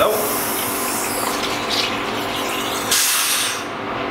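Steady hissing spray of water being flushed through beer lines and their fittings, cutting off sharply about three and a half seconds in, over a steady low hum.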